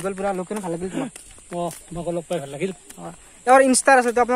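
Men talking in a steady run of speech, louder near the end, over a faint steady high hiss.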